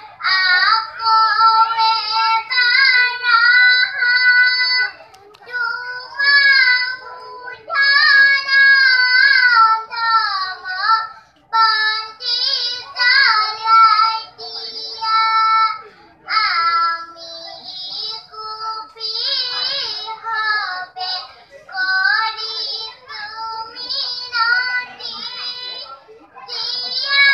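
Children singing a song in sung phrases, with short breaks between lines.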